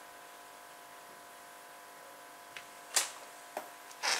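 Faint steady room hum, then a few light clicks and one sharper knock about three seconds in, from small craft pieces being handled on a table.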